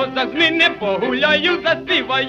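Music: a historic 78 rpm recording of Ukrainian village band music from 1928–1933, a fiddle-led tune with a voice singing in a high, yodel-like way.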